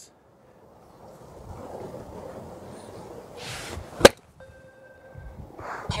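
A golf iron swung for a chip shot: a short whoosh of the club, then one sharp, crisp click as it strikes the ball off an artificial hitting mat, about four seconds in. A faint steady tone follows for about a second.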